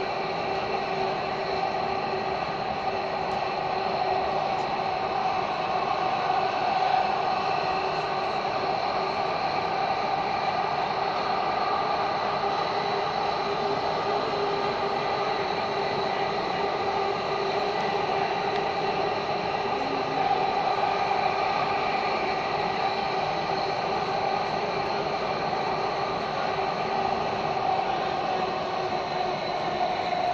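Delhi Metro train running along the line, heard from inside the passenger car: a steady running noise of wheels on rail with several steady whining tones held over it.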